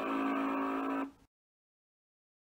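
A steady, buzzing tone with many overtones, held at one pitch and then cut off abruptly a little over a second in, followed by dead silence. It is an end-card sound effect.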